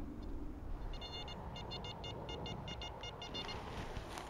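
XP Deus metal detector giving a run of short, high-pitched beeps, about four or five a second for some two and a half seconds: a target signal, which the detector reads as 70.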